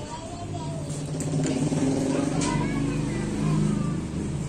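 A motor vehicle engine running and growing louder, with indistinct voices in the background.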